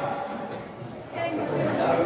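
Indistinct voices of people talking in a bar room, quiet at first and picking up about a second in.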